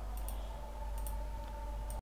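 Computer mouse clicking: a few short clicks, two close together about every second, over a steady low hum.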